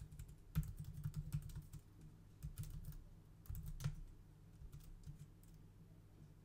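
Typing on a computer keyboard: key clicks in a few short, irregular bursts as a command is typed in and entered.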